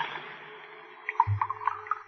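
A radio-drama sound effect of whiskey poured from a bottle into a glass: a sharp clink at the start, then a quick run of glugs about a second in.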